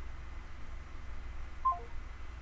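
Near the end, a short three-note electronic beep stepping down in pitch: a phone's call-ended tone after the call hangs up. A low steady hum runs underneath.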